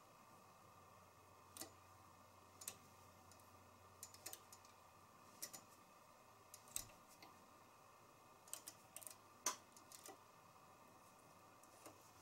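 Near silence broken by faint, irregular light clicks of a knitting machine's metal latch needles as stitches are popped off the hooks by hand, one a little louder about nine and a half seconds in.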